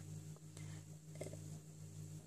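Quiet room tone with a steady low hum and a couple of faint, brief handling sounds.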